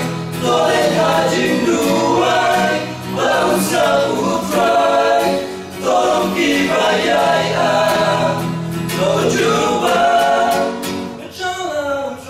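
Male choir singing a gospel song in Khasi, in sung phrases of a few seconds with short breaks between them.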